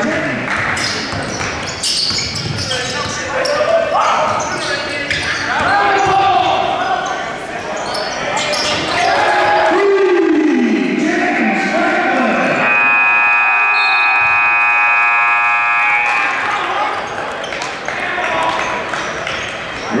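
Basketball bouncing on a hardwood gym floor during play, then the gym's scoreboard horn sounds one steady blast of about three and a half seconds, starting about 13 seconds in.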